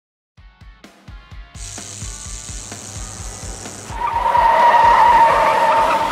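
Intro sting: a fast, steady thumping beat with musical tones, then a loud car tyre screech from about four seconds in that cuts off suddenly.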